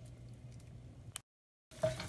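Faint sounds of a wooden spoon stirring tomato paste in oil in a stainless steel pan, over a low steady hum. A sharp click just after a second in, then half a second of dead silence where the video is cut.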